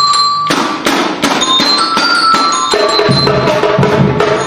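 Marching percussion band with bell lyres playing. A ringing lyre note sounds first, the snare drums, surdos and bass drums come in about half a second in with fast strokes under a lyre melody, and deeper bass-drum beats join near the end.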